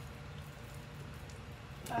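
Texture roller stamp rolling through wet, tacky paint on a door panel: a faint soft crackle over a steady low hum.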